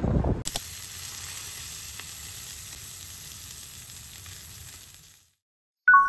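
Sendai beef hamburg patty sizzling steadily in a frying pan, fading out about five seconds in. A short, bright two-note chime sounds right at the end.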